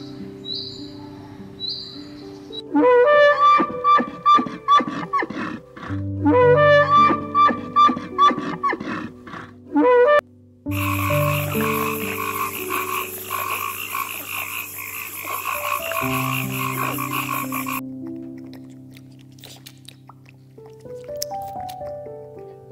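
Frog croaking: runs of quick repeated calls, a few a second, then a dense continuous call that cuts off suddenly near the end, over soft piano music.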